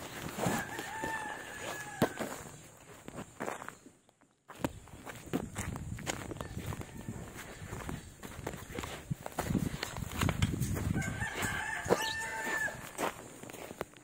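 A rooster crowing twice: one long held crow near the start and another near the end. Footsteps and short knocks from walking run underneath throughout.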